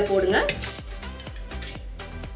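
Black gram (urad dal) poured into the steel drum of a stone wet grinder, the grains pattering onto the drum and grinding stones as a stream of small clicks, after about half a second of voice or music.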